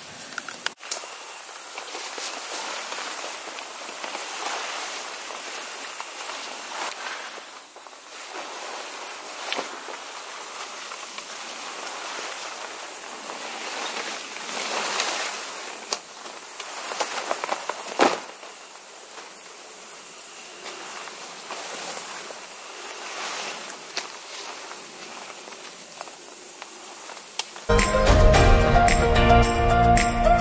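Camouflage fabric ground blind rustling and flapping as it is set up, with scattered rustles and one louder thump about 18 seconds in, over a steady high hiss.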